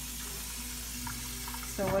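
Curried chickpeas frying in oil in a lidded pan on a gas stove, a steady even sizzle.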